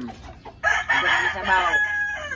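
Rooster crowing: one long, loud call starting just over half a second in and ending on a held high note.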